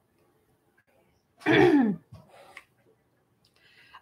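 A woman clears her throat once, about a second and a half in, her voice dropping in pitch as she does, followed by a few faint small sounds.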